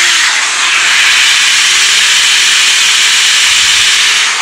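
Vacuum cleaner run in blowing mode, a loud steady rush of air from its nozzle into a desktop PC case. The blast spins the cooler fan up to a very high speed, and its steady whine dips briefly and recovers partway through.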